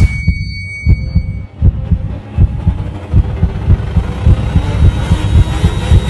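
Heartbeat sound effect, low thumps that come faster and faster, over a faint hiss.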